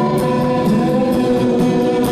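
Live rock band playing: sustained, chiming electric guitar chords over drums, with cymbal strokes repeating at an even beat.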